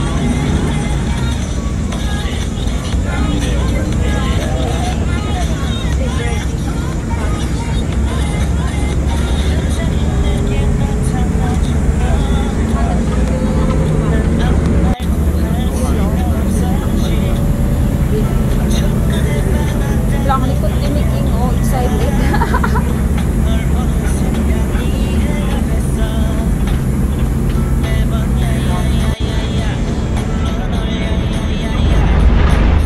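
Steady low rumble of a moving bus heard from inside the passenger cabin, with music and indistinct voices over it.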